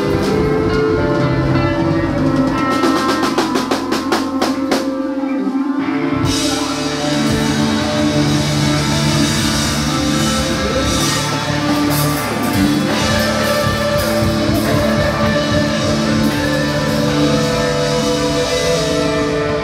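Live band jamming: electric guitars, saxophone, keyboard and drum kit playing together. A few seconds in, the low end drops away under a run of quick, evenly spaced drum hits, and the full band comes back in about six seconds in.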